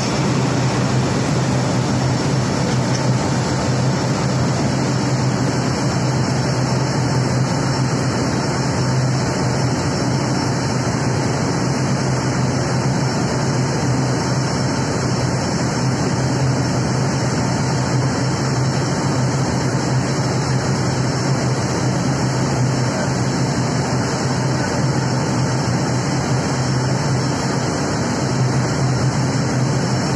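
Steady low drone of a river passenger launch's engine under way, mixed with the rushing of churned water and wind.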